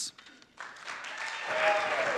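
Audience applause, starting about half a second in and growing louder.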